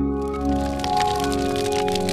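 Logo-sting music: a held synth chord, with a dense crackling sound effect that comes in as the chord swells.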